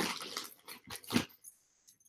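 A few short, soft clicks and knocks of costume jewelry and beads being handled and moved, spaced out with quiet gaps between them.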